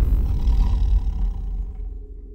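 A loud, deep rumbling boom from the trailer's sound design, with a rush of hiss at its start, dying away over the second half.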